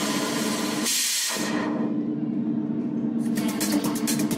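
House/techno DJ mix in a breakdown with the kick drum gone. Held synth chords sound under a rush of noise that peaks about a second in. The top end is then filtered away, and it opens again with ticking hi-hats shortly before the end.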